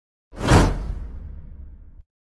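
Whoosh sound effect with a deep low boom for an animated subscribe-button burst. It comes in suddenly about a third of a second in and fades out over about a second and a half.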